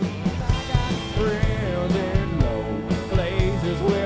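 Live country-rock band playing an instrumental passage: a lead line with bent, wavering notes over a steady drum beat and bass.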